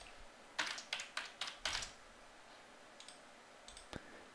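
Typing a short word on a computer keyboard, about six quick keystrokes in just over a second, followed by a few faint mouse clicks near the end.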